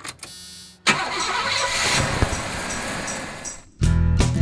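An old full-size van's engine being started: a brief burst of starter cranking, then the engine catches about a second in and runs for a few seconds before cutting off abruptly. Guitar music starts right at the end.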